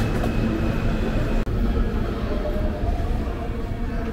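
Steady low rumble of a subway station, with a faint steady whine above it. The sound cuts out for an instant about a second and a half in.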